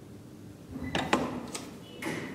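Clicks and clunks from an old KONE traction elevator's mechanism over a low hum: a cluster of sharp clicks about a second in, the loudest a knock, then one more click half a second later.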